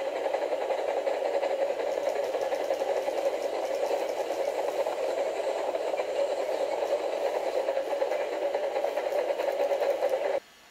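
Model railway locomotive running along the track, its small electric motor and wheels making a steady whirring rattle.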